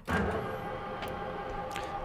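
Grizzly metal lathe switched on and coming up to speed at once, then running steadily with a whine of fixed tones from its spindle drive and geared headstock, the power carriage feed engaged.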